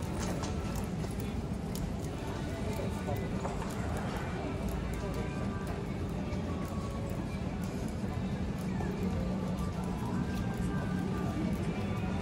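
Busy pedestrian shopping street ambience: a steady murmur of passers-by's voices with music playing, and footsteps on the pavement as the walker moves along.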